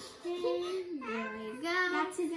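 A young girl singing a few long held notes, the pitch stepping down about a second in and then back up.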